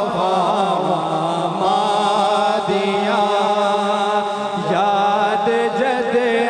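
A man's voice singing a naat, an Urdu devotional poem, into a microphone, in long held notes that waver and slide between pitches.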